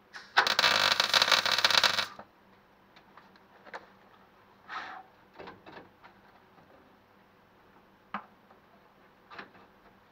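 MIG welder laying a tack weld on the steel tailgate, a loud crackling arc lasting about two seconds with a low mains hum under it, stopping abruptly. A few light clicks and knocks of the torch and gloves being handled follow.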